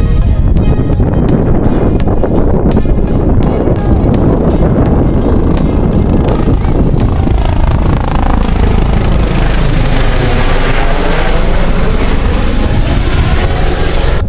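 Helicopter flying low overhead: loud, steady rotor and engine noise, with a whooshing sweep in its tone as it passes closest, about ten seconds in.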